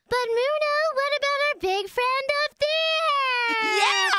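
High-pitched, childlike cartoon character voices vocalizing without clear words in several short phrases, ending in a long held note that slides downward.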